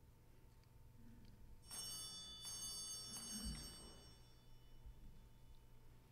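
A small bell struck twice in quick succession, its high, bright ringing dying away over about two seconds, signalling the start of Mass.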